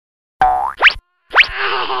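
Cartoon sound effects: a short wavering tone, then two quick rising whistle-like glides about half a second apart. A cartoon voice exclaims "Oh!" with a laugh at the very end.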